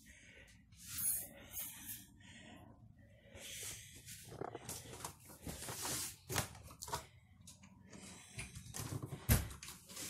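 Irregular rustling, clicks and knocks of handling and movement, with a louder knock about nine seconds in.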